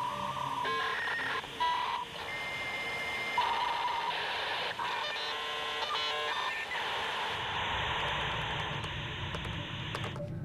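Dial-up modem connecting over a phone line: a run of beeps and tones, a steady high answer tone about two seconds in, warbling handshake tones, then a steady rushing hiss from about seven and a half seconds.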